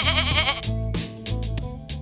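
A goat bleating once, a wavering call in the first half-second, over background music with a steady beat.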